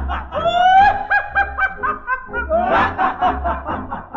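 Voices laughing in repeated short bursts over a tango band's accompaniment with a steady low beat, on an old recording.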